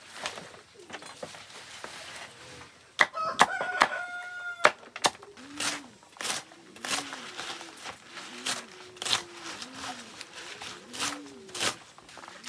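A cleaver chopping leafy greens on a wooden board, in steady strokes about one and a half a second from about five seconds in. A rooster crows once about three seconds in.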